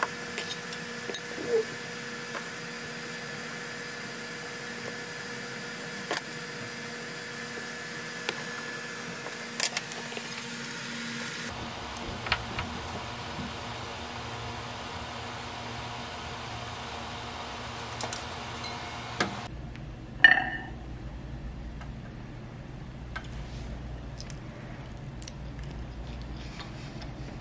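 Quiet kitchen room tone with a steady electrical hum and scattered light clicks and taps from handling food and utensils. The background shifts twice, and a brief louder sound comes about twenty seconds in.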